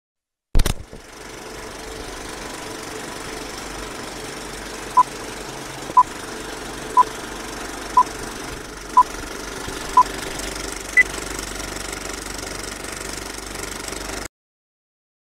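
Old-style film projector rattle with film hiss, the sound of a film countdown leader: a sharp click at the start, then six short beeps one a second from about five seconds in, followed by a single higher beep. The rattle cuts off suddenly at the end.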